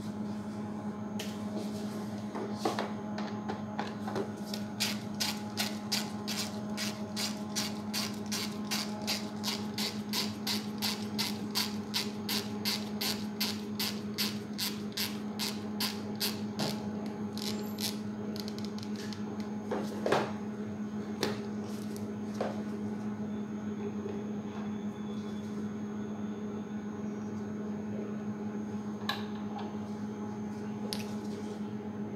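Light plastic clicks in a fast even run, about four a second for some ten seconds, fitting a micropipette's volume dial being turned, then a few single clicks and knocks, the loudest about 20 seconds in. A steady low hum runs underneath.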